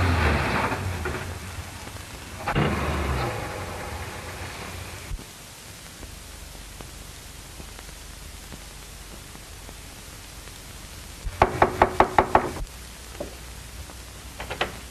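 A car running as it pulls up, fading away by about five seconds in; near the end, a quick run of about seven knocks on a wooden front door.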